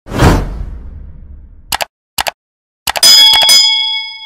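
Sound effects of a subscribe animation: a sudden low hit that fades away, a few short clicks, then a bright bell-like ding near the end that keeps ringing.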